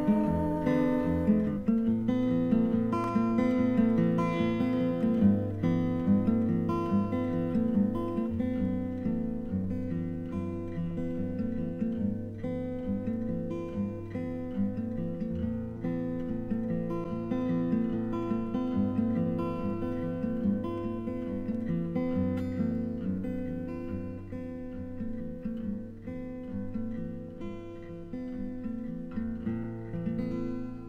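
Acoustic guitar playing an instrumental passage of a folk song after the last verse: a steady picked and strummed pattern over repeating bass notes, no singing, slowly getting quieter toward the end.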